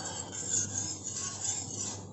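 Metal ladle stirring and scraping around a stainless steel saucepan of butterfly pea flower liquid, heated so the agar powder in it dissolves.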